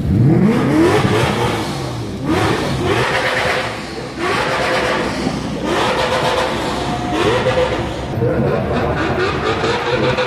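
Race cars accelerating hard past, engines revving up through the gears in a series of rising sweeps. The sound changes abruptly a couple of times as one car gives way to the next.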